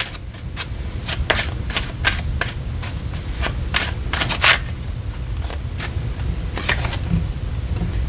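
A tarot deck being shuffled by hand: an irregular run of soft card flicks and slaps, over a steady low hum.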